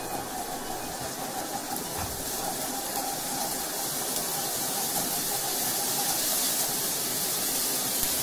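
Spice paste frying in oil in a nonstick kadai, a steady sizzling hiss that grows slightly louder, while a wooden spatula stirs it.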